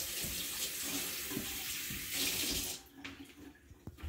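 Kitchen sink tap running as hands are washed under it, then shut off a little under three seconds in.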